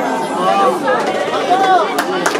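A person's voice, rising and falling in pitch in a few short phrases, over low chatter in the room.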